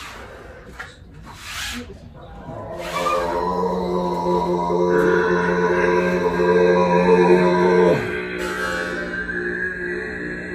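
Overtone singing: after two short rushes of noise, a voice holds one low droning note from about three seconds in, and a high whistling overtone rises out above it about five seconds in. The note slides down and stops near the eight-second mark, and a new droning note starts.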